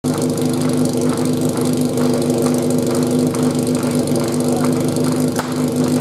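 Fire-sport pump's engine running steadily at idle, with a short sharp crack about five seconds in.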